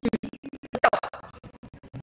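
A dense, irregular run of clicks and scratchy crackling noise.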